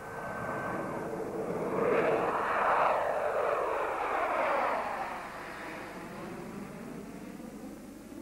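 Jet aircraft flying past, presumably the Tu-144 supersonic airliner. The engine noise swells to a peak about two to three seconds in, with a sweeping shift in pitch as it passes, then slowly fades.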